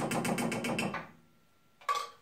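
Contents glugging out of a glass jar into a steel saucepan in rapid, even pulses that stop about a second in, then a single sharp clink near the end.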